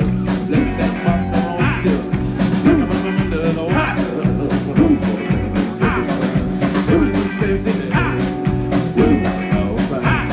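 Live rock band playing: a man singing over strummed acoustic guitar, bass guitar and drums keeping a steady beat.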